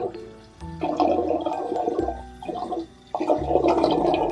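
Water gurgling down a bathtub drain in three bubbly stretches, a sound effect laid over soft background music as the plug is pulled.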